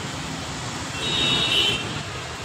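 Steady traffic noise on a wet road in the rain. A high-pitched vehicle horn sounds for nearly a second, starting about a second in.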